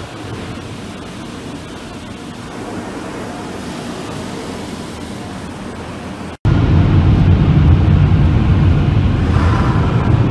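Automatic car wash running, heard from inside the van's cabin: a steady, even hiss. About six and a half seconds in, it cuts abruptly to a louder low rumble of the van driving.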